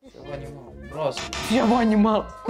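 Raised voices over background music.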